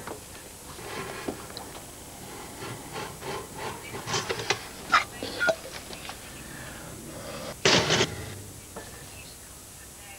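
Small kitchen handling sounds: scattered clinks and knocks of bottles and crockery being taken from the fridge and a cupboard shelf, with a louder clatter just under eight seconds in.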